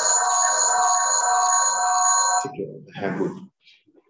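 Steady electronic ringing tone made of several held pitches at once, coming through the video-call audio and cutting off suddenly about two and a half seconds in.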